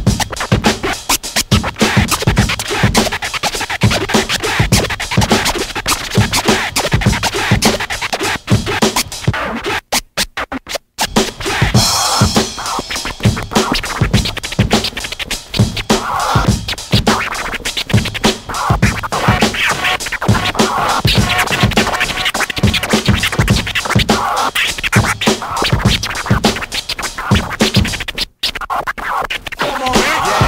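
Hip-hop DJ scratching on turntables over a drum beat. The sound is chopped on and off rapidly about ten seconds in and drops out briefly once near the end.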